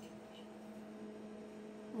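Faint, steady electrical hum: a low even tone with a fainter higher one above it, over quiet room noise.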